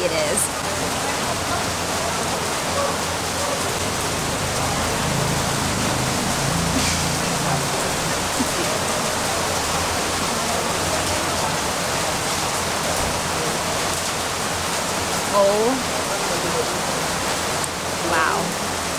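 Rain falling steadily, a constant even hiss.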